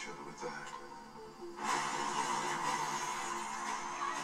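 Movie trailer soundtrack played back: music with a voice, then, about one and a half seconds in, a sudden louder surge of dense sound that carries on.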